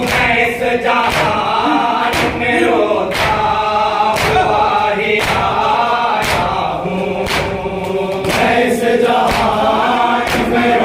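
A men's group chanting a noha, a Muharram lament, in unison into microphones. Chest-beating matam, open palms slapping chests, keeps time at about one stroke a second.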